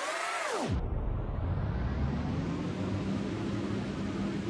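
A whoosh transition sound effect whose pitch arches up and then falls, cutting off sharply under a second in, followed by a steady low hum and hiss.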